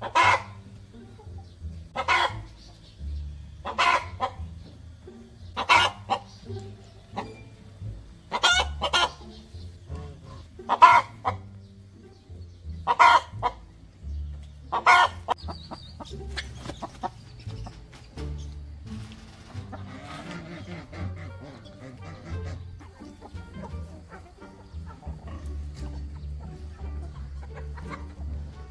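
Hen calling: a short, loud call repeated about every two seconds, nine times over the first fifteen seconds, then only fainter, scattered clucking.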